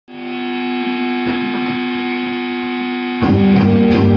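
Electric guitar music with distortion: a held chord rings on steadily, then about three seconds in a louder, fuller part with bass comes in.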